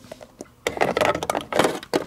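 Handling noise of plastic toys being moved by hand: a burst of clicks, knocks and rustling that starts a little over half a second in.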